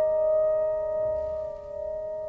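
A sustained piano note ringing out and slowly fading, with no new notes struck: the last sound of a song.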